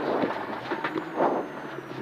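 Peugeot 106 N2 rally car's engine running at low revs, heard inside the cabin as the car creeps through a slow chicane, with a few light clicks.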